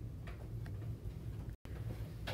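Low steady hum of the recording's background with a few faint ticks; the sound drops out completely for an instant near the end.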